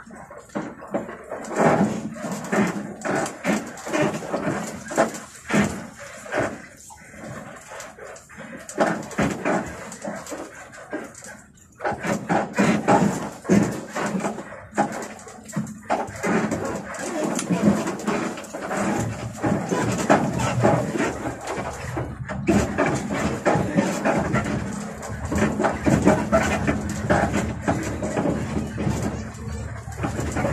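People talking inside a moving bus cab over the steady hum of the bus's engine.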